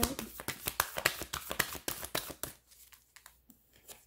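A deck of oracle cards being shuffled by hand: a quick run of card slaps for about two and a half seconds, then a few faint taps.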